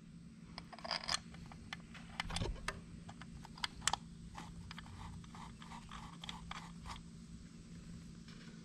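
Faint metallic clicks and scrapes of 10 mm bolts being fitted and hand-threaded into a motorcycle water pump cover, with a few sharper taps about one, two and a half, and four seconds in, over a low steady hum.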